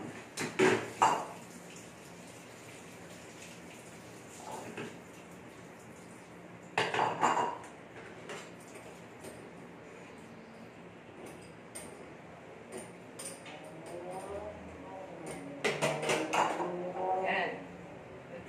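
Dishes and metal kitchenware clattering as they are handled at a kitchen sink, in separate bursts: loud clatters about a second in and about seven seconds in, a lighter one around five seconds, and more clinking near the end.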